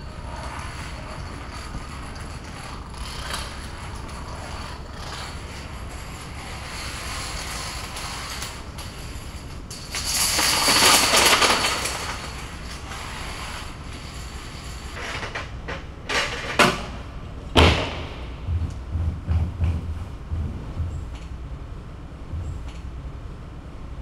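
Thousands of H5 plastic toppling dominoes falling in a long chain reaction: a steady fine clatter that swells much louder for a couple of seconds about ten seconds in, with a few sharper knocks and a run of low thumps near the end.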